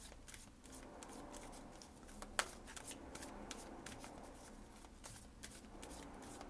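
A deck of oracle cards being shuffled by hand: a faint, irregular run of soft card slaps and clicks, with one sharper snap a little before the halfway point.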